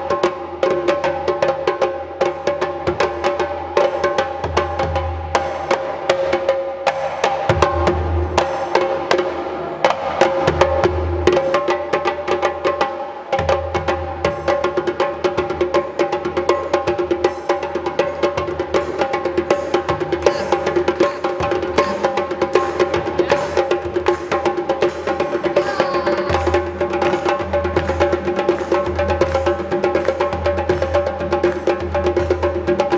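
Two djembes played together in a dense, continuous hand-drum rhythm, mixing deep bass strokes with ringing tones and sharp slaps.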